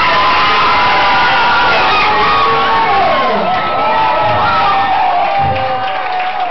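A bar crowd cheering loudly, with several long high-pitched screams and whoops over the noise of many voices.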